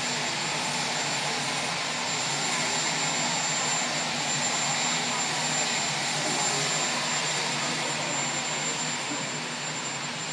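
Aircraft turbine engines running steadily, a constant even drone with a thin high whine over it.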